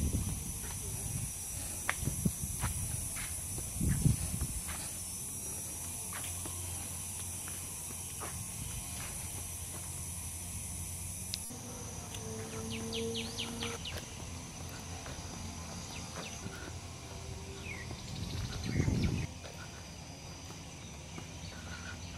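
Steady high insect drone, with scattered faint clicks and a few short chirps, and low rumbles of wind on the microphone near the start and again near the end. The drone drops in level after a cut about halfway through.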